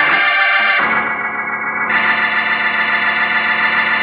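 Organ music closing a radio drama: sustained chords that shift to a new chord about a second in and swell into a fuller chord about two seconds in.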